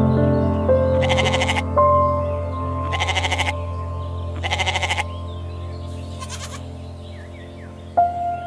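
Goat bleating: three loud wavering bleats about half a second each, roughly two seconds apart, then a fainter call about six seconds in, over soft background music with held notes.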